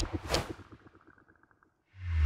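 Swish sound effects from an animated outro: two quick whooshes in the first half second, then a fading run of light ticks that dies away by about a second and a half in.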